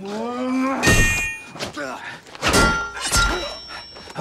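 A man's yell, then sword blows striking a shield: three hard strikes with metallic ringing, about a second, two and a half and three seconds in.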